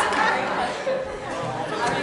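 Several voices chattering at once, a group of people talking over one another.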